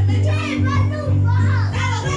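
Electronic keyboard playing held chords over a deep bass note, with children's voices singing and calling along.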